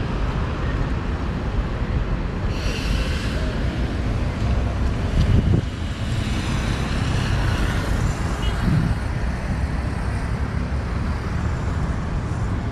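Steady road traffic noise of cars passing on a wide city avenue, with a brief hiss about three seconds in.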